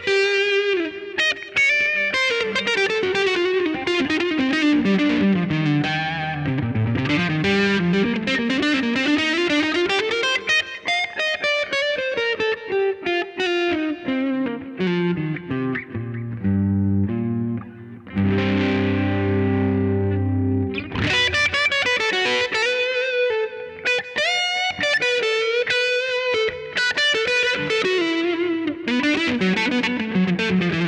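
Epiphone electric guitar played through a ProCo RAT distortion pedal with its distortion knob low, at about nine o'clock, giving a subtle crunch rather than heavy distortion. Melodic single-note lines and runs, with a held chord a little past the middle.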